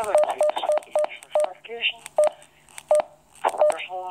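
Keypad beeps from an MD380 DMR handheld radio: about eight short, identical beeps at irregular intervals as the menu is scrolled down item by item.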